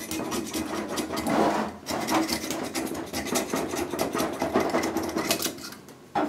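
Old gasket material being scraped off the metal cover bracket of a Taco 1900 series pump in quick, repeated rasping strokes, with a brief pause a little under two seconds in.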